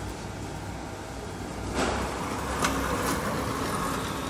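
Loaded hand pallet truck rolling over a concrete floor with a steady low hum beneath. From about two seconds in a louder rattle starts, with two sharp knocks near the end.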